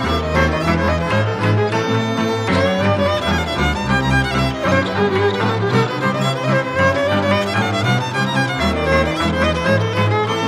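Banat folk instrumental music led by violin over a steady low string accompaniment.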